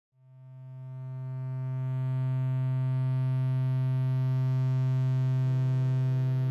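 A single low note from a homemade electric viola with magnetic pickups, sustained by an EBow. It swells up from silence over about two seconds, with no bow attack, and is then held at one steady pitch.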